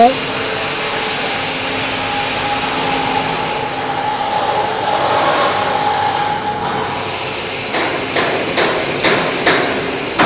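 Steady hum of workshop machinery. Near the end a hammer starts striking, a few sharp blows a second.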